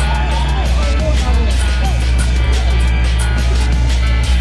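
Loud dance music blasting from a truck-mounted stack of sound system speakers, dominated by heavy bass with a steady beat.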